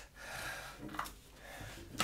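A man's soft breath out, followed by a small click about a second in.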